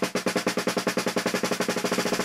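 Snare drum struck with wooden drumsticks in a fast, even stream of strokes, like a drum roll. It is played at the speed where articulated fast-twitch strokes overlap bounced strokes, so the two can't be told apart.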